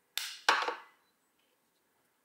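Plastic lid of an AirPods charging case snapping shut: two quick clacks within the first second, the second sharper and louder.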